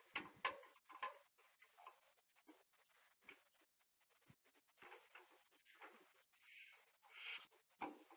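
Near silence, with a few light clicks in the first second and faint scattered ticks after, from hands working the flywheel of a 1941 John Deere Model B before a hand start; the engine is not running.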